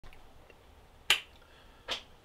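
Two sharp clicks in a small room: a loud one about a second in and a weaker one near the end.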